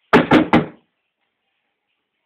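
Three quick, sharp hand claps, about a fifth of a second apart, each with a short ring after it.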